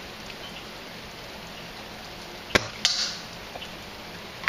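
A single shot from a Snow Wolf VRS-10 spring-powered airsoft bolt-action sniper rifle fitted with a 500 fps spring: one sharp crack about two and a half seconds in, followed a third of a second later by a second, duller noise.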